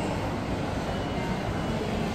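Steady background din of a busy indoor public space, a low even rumble with faint, indistinct voices.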